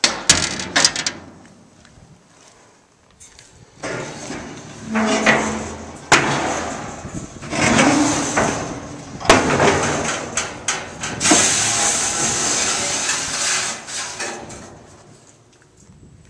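Metal knocks and scraping from handling the steel cooking chamber and expanded-metal racks of a reverse-flow smoker: a few sharp clicks, several rasping scrapes a second or two long, and a longer hissing stretch near the end.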